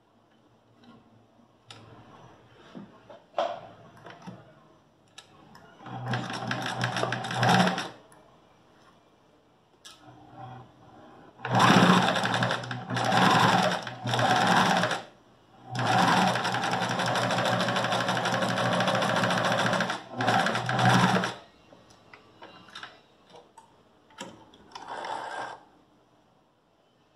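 Domestic electric sewing machine stitching in six short runs, the longest about four seconds in the middle. There are brief pauses with small clicks and fabric handling between the runs.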